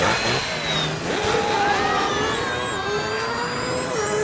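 Cartoon rocket-thruster sound effect of a robot dog's flying-bike form blasting off: a steady, loud rushing jet sound with whining tones that glide slowly over it.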